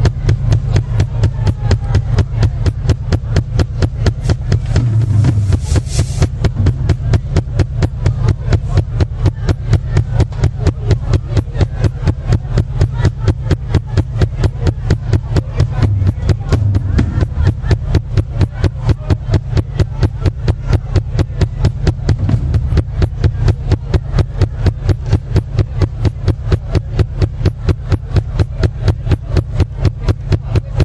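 Live rock band playing an instrumental passage: electric guitar and a deep bass line over drums that keep a steady, fast beat of about four strokes a second.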